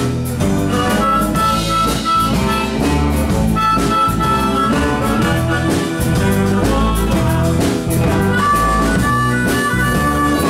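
Live blues band playing: harmonica played into a microphone over acoustic guitar, electric bass, keyboard and drums, with several high held notes of under a second each.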